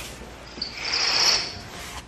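A brief, high-pitched scraping hiss that swells and fades over about a second, a little after the start.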